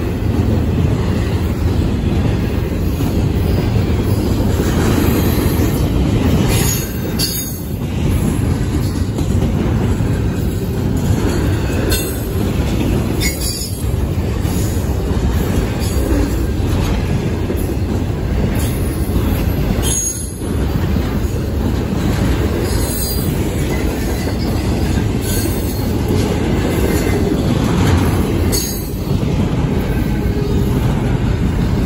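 CSX intermodal freight train's container and trailer cars rolling past close by: a steady, loud rumble of steel wheels on rail, with brief high-pitched wheel squeals every few seconds.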